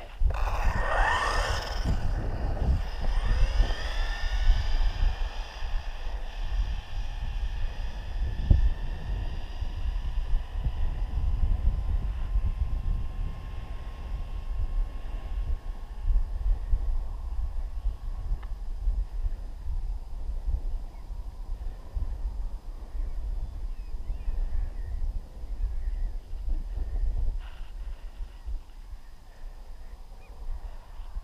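Wind rumbling on the microphone. A whine rises in pitch over the first few seconds, then levels off and fades.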